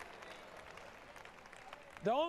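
Faint applause from a congregation: many quick overlapping claps, low under the hiss.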